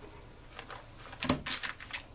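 Soft handling noises as a paper pattern piece and sweatshirt fabric are moved about on a cutting mat: a few brief rustles and light knocks, the loudest about a second and a quarter in.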